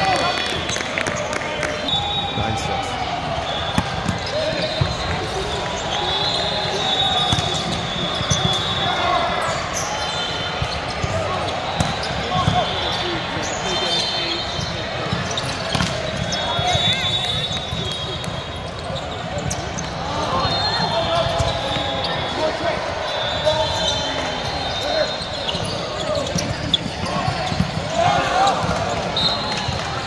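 Indoor volleyball hall during play: a continuous mix of players' shouts and spectators' voices, with repeated sharp smacks of balls being struck and bouncing. High-pitched squeaks come and go throughout.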